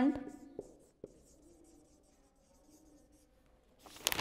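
Felt-tip marker writing a word on a whiteboard: faint scratchy strokes. A louder burst of noise starts just before the end.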